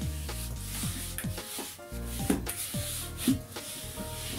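Quickle Mini Wiper pad with a paper towel rubbing back and forth across floor tiles in repeated wiping strokes, over background music with a steady beat.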